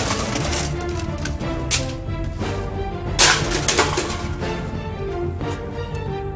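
Music playing over a few sharp crashes and cracks from pieces of an old Dell desktop computer being smashed. The loudest crash comes a little past three seconds in.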